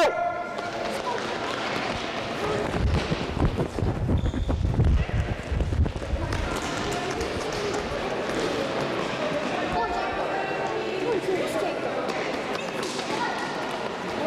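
Children's running footsteps thudding on a sports-hall floor during a sprint relay, heaviest between about three and six seconds in, with children's voices throughout.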